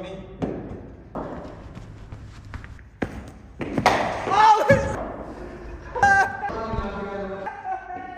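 A sharp knock as the cricket bat hits the ball about three seconds in, followed by loud shouting and excited men's voices.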